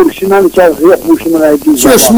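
A person talking continuously. A bright, hissy sound comes in near the end.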